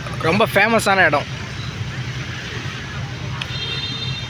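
Steady low rumble of road traffic, cars and motorbikes, with a person's voice speaking briefly in the first second. A short, thin high tone sounds near the end.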